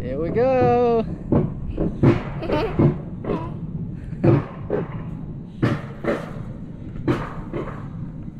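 High voices calling out and chattering with no clear words: one long, high, wavering call in the first second, then a string of short shouts and exclamations.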